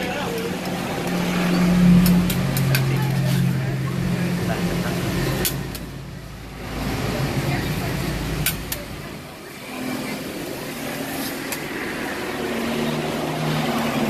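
Metal spatula scraping rolled ice cream along a frozen steel plate, with a few sharp metal ticks. Underneath runs a low engine-like hum that rises and falls, loudest about two seconds in, with background voices.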